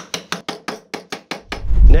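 A small mallet tapping a glued walnut dovetail joint home with quick, even light knocks, about five a second, seating the joint. Near the end there is one loud, low thump.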